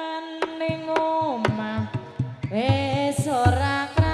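Javanese gamelan (karawitan) music for tayub: a female singer holds long notes that slide between pitches, over sharp, regular drum strokes.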